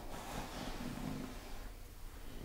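A woman taking a slow, deep breath: airy at first, then a faint low hum-like sound for about a second.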